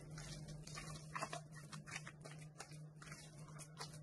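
Faint, irregular squelching and scraping of a silicone spatula mixing a soft, sticky cornmeal dough with crumbled white cheese in a glass bowl, over a low steady hum.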